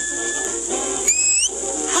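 A short, sharp whistle about a second in, rising in pitch and then levelling off, over a band playing in the background. It is heard through the steady surface hiss of a 1940s home-recorded acetate 78 disc.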